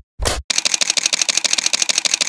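Camera shutter sound: one sharp click, then a fast, even burst of shutter clicks at about a dozen a second, like a camera firing on continuous drive.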